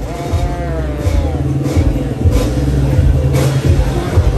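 Vespa drag bike's engine running at full throttle down the strip. Its pitch drops just after the start, as at a gear change, and then holds steady.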